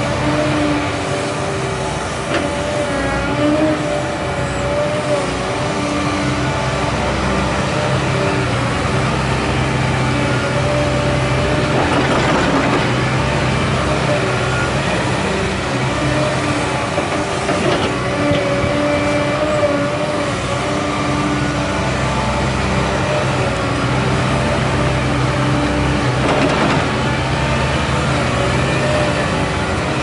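Caterpillar 316E L hydraulic excavator working: its diesel engine runs steadily under load with a wavering whine over the drone. Three short rushes of noise come about a third of the way in, just past halfway, and near the end.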